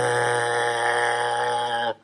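A steady electric buzzing sound effect, one unwavering tone held for about two seconds and cut off sharply near the end, standing for an electric shock.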